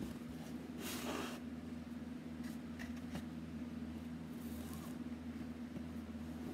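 Chipboard drawer boxes being handled and slid against each other and the table: a short scraping rustle about a second in and another near the end, over a steady low hum.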